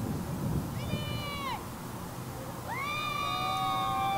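Drawn-out, high-pitched shouted calls from several voices: a short call about a second in, then longer held calls near the end, overlapping at different pitches, over low background noise.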